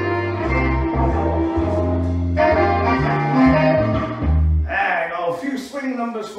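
Recorded backing-track music with brass playing out its final bars and stopping abruptly about five seconds in. A man's voice starts speaking right after.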